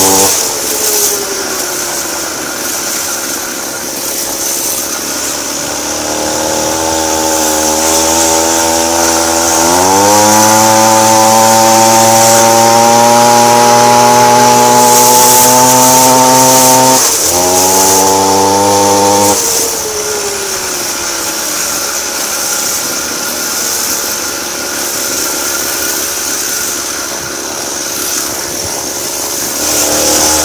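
42cc Homelite chainsaw engine powering a motorized bicycle through a friction drive, its revs rising and falling with the throttle. The revs drop right at the start, then climb to a high steady pitch held for about seven seconds from around ten seconds in, with a brief cut. They then fall back to a lower, quieter running speed and climb again at the very end.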